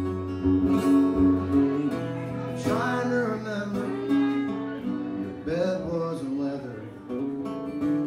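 Acoustic guitar strummed along with a bowed fiddle, played live as a country-folk duo.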